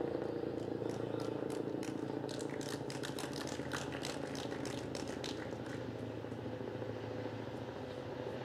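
Helicopter flying overhead, a steady engine and rotor drone that slowly fades, with some faint clicks over it.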